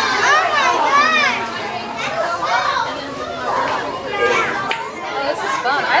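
Children's voices chattering and calling out, high-pitched and swooping up and down, with other people talking around them.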